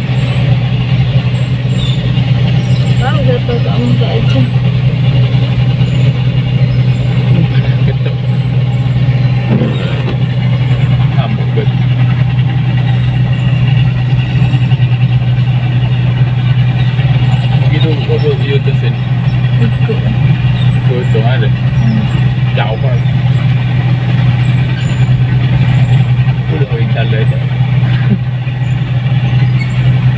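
Diesel engine of a New Holland 8060 rice combine harvester running steadily as the machine is driven along a road, a loud, unbroken low drone.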